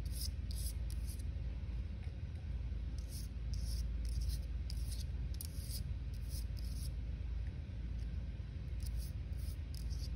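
A bundle of conifer needles wet with paint, swept across paper in many short strokes at an uneven pace, over a steady low hum.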